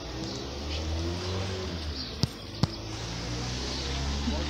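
A car engine running nearby in the street, a steady low hum. Two sharp clicks come about two seconds in, less than half a second apart.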